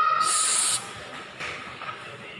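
A short, high-pitched hiss lasting about half a second near the start, following the tail of a held voice note; after it, quiet lobby background with a couple of faint clicks.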